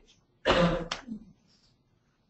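A single loud cough about half a second in.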